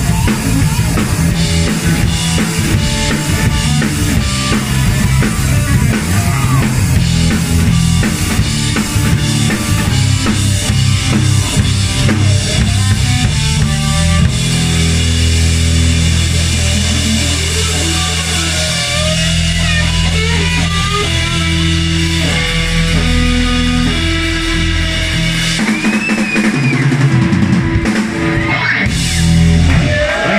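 Punk rock band playing live, drum kit and electric guitar: a fast, driving beat for the first half, then long held notes over the drums, with the song ending near the close.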